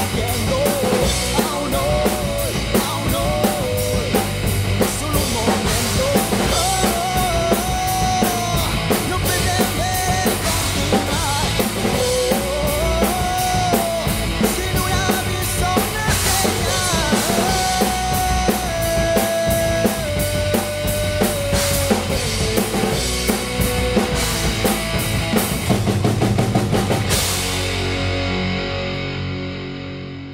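A PDP acoustic drum kit played hard in a rock beat, with crashing cymbals, along with a rock song whose lead guitar line wanders in pitch above it. A last big hit comes near the end, and the sound then fades out.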